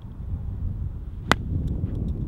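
A golf club strikes a ball out of a sand bunker: one sharp crack a little past a second in, over a low outdoor rumble.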